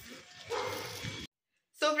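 Street noise with a louder stretch about half a second in that cuts off abruptly, then a brief dead silence before a woman starts speaking.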